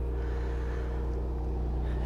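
Seat Leon Cupra 300's turbocharged 2.0-litre four-cylinder engine idling through an exhaust without a petrol particulate filter: a steady, even low hum.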